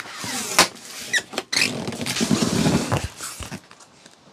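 Packing tape pulled off the roll in tearing, squealing strips and pressed down onto a cardboard box, stopping abruptly about three and a half seconds in.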